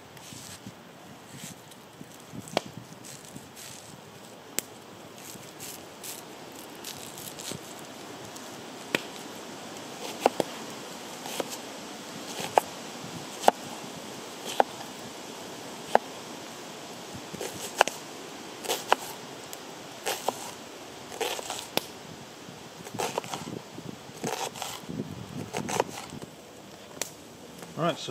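Knife dicing an onion on a wooden chopping board: sharp single taps of the blade through the onion onto the wood, irregular and about a second apart, coming faster and in clusters in the last few seconds.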